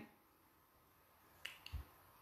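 Near silence, broken by two faint, short clicks about one and a half seconds in.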